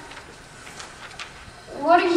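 A short pause in stage dialogue: quiet hall sound with a few faint knocks, then an actor's voice comes in with a rising tone near the end.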